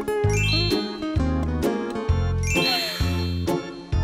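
A twinkling chime sound effect sweeping upward in pitch, once just after the start and again, brighter and shimmering, about two and a half seconds in, over cheerful background music with a steady bass line.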